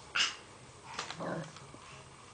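A baby's brief vocal sound about a second in, after a short hiss near the start.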